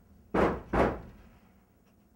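Two heavy bangs at a door, less than half a second apart, each dying away quickly.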